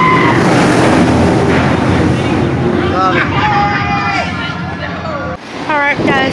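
Roller coaster train rushing past on its track with riders screaming, a loud wash of noise that eases off after two or three seconds, followed by nearby voices and laughter.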